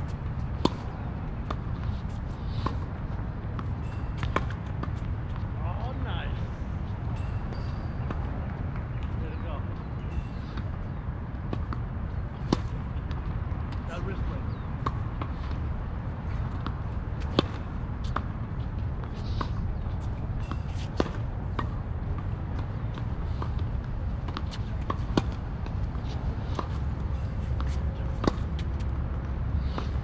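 Tennis balls struck by racquets and bouncing on a hard court in a rally: sharp pops every second or two, over a steady low rumble.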